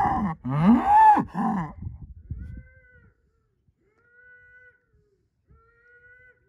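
Angus bull bellowing with his head raised: loud calls that rise and fall in pitch during the first second and a half, trailing off into low grunts that die away by about three seconds in.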